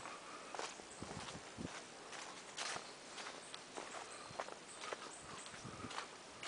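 Footsteps crunching through dry leaf litter and twigs on a forest trail, an irregular run of short crunches as someone walks at a steady pace.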